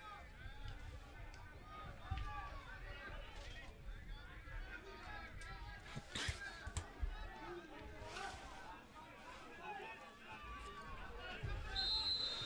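Faint field-level sound of a football match: distant shouting and chatter from players and spectators, broken by a few sharp knocks.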